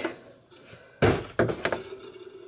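Darth Vader toaster and its cardboard box being handled during unboxing: one sharp thump about a second in, then a few lighter knocks.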